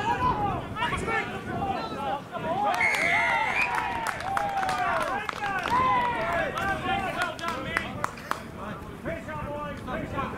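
Rugby players shouting and calling to each other on the field, several voices at once. A referee's whistle blows once, about three seconds in, for under a second. Two sharp smacks near the end.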